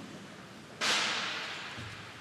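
A single cymbal crash about a second in, fading away over about a second.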